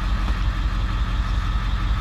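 Bus engine idling with a steady, even low rumble.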